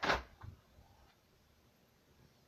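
A dog in the room making a short, sharp noisy sound right at the start, then a smaller one about half a second later, over quiet room tone.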